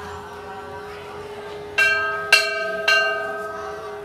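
Hanging temple bell struck three times about half a second apart, each strike ringing on and slowly fading. A steady held tone runs underneath.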